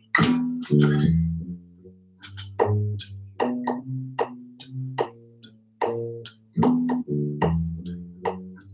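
Electric bass guitar played fingerstyle: a medium-tempo two-five-one line in the key of C, laid down for a looper. It is a steady run of low notes, each starting with a sharp click.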